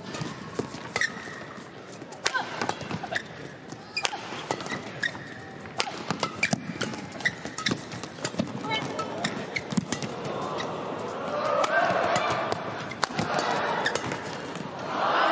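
Badminton rally in an arena: a rapid, irregular run of sharp racket strikes on the shuttlecock, with crowd voices swelling in the last few seconds as the rally builds.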